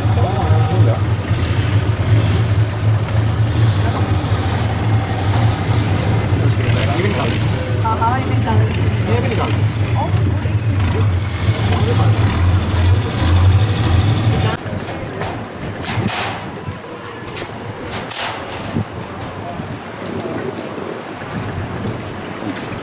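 Longtail boat engine running steadily at low speed, with people's voices over it. The engine sound stops abruptly about two-thirds of the way through, leaving quieter chatter and a few sharp knocks.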